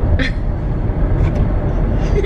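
Steady low rumble of a minivan on the move, heard from inside its cabin, with a brief vocal sound near the start.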